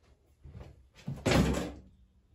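A door pushed shut with a solid thud about a second and a quarter in, preceded by a couple of faint knocks.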